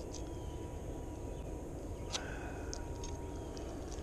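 Steady low outdoor background rumble with a thin steady high tone and a few faint short ticks, one about two seconds in.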